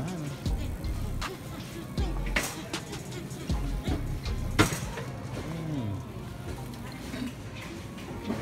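Wire shopping cart rolling and rattling along a store aisle, with two sharp knocks, one about two and a half seconds in and one near the middle, over background music and faint voices.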